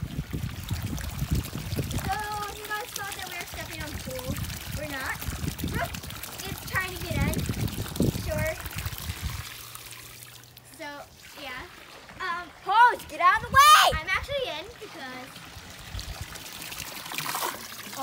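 Water sloshing and splashing in a backyard pool as a float is moved about, under girls' voices; near the end a loud, high-pitched child's voice is the loudest sound.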